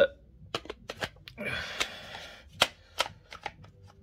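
Plastic .22LR snap caps being handled and pushed into a polymer rifle magazine: a string of short, sharp plastic clicks, with a brief rustle of handling about halfway and a quicker run of clicks near the end.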